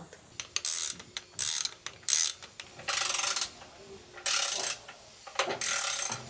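Ratchet wrench tightening the bolts of a manual oil-sump pump onto its bracket on a marine engine: about six short bursts of ratchet clicking, unevenly spaced.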